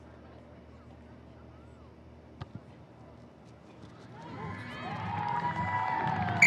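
A rugby ball kicked off a kicking tee for a penalty goal: one short sharp thud a little over two seconds in, then spectator noise swelling over the last two seconds as the ball flies toward the posts.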